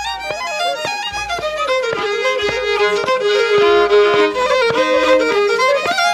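Fiddle playing a traditional tune, a quick run of notes stepping up and down, growing louder.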